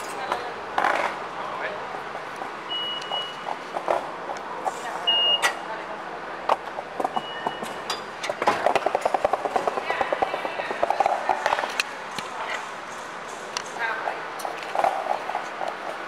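Busy station hall with indistinct voices and clatter, and a few short high beeps from the turnstile fare readers.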